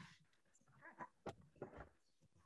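Near silence: room tone from a video call, with a few faint, brief sounds around the middle.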